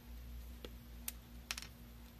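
A few small, sharp clicks and taps from hand work at an electronics workbench, one at a time and then a quick cluster of three or four, over a faint steady hum.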